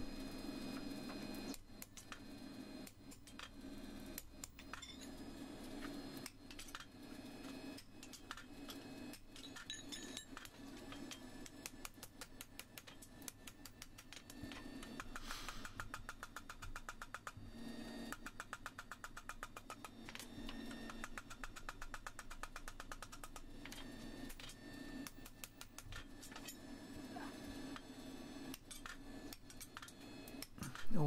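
Faint, sped-up hammer blows driving a pritchel through the nail holes of a hot horseshoe on the anvil: a rapid run of light taps and clicks, quickest a little past the middle.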